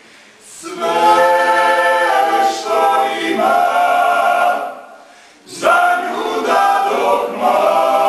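Male klapa ensemble singing unaccompanied in close multi-part harmony. The voices enter about half a second in, break off for a short breath just before the middle, and come back in with a new phrase.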